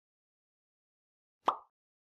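Dead silence, then a single short, sharp sound effect about one and a half seconds in: an end-card logo sting.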